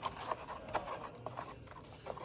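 A plastic spoon stirring hot cocoa in a foam cup, with light, irregular tapping and scraping against the cup.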